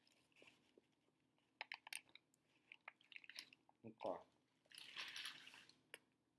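A person chewing a bite of burger close to the microphone: faint scattered clicks and crunches of the food in the mouth, a brief hum about four seconds in, and a soft rustling hiss near the end.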